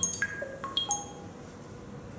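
Chime-like sound effects from an interactive anatomy app: about six bright, ringing notes at scattered pitches in the first second, then they stop.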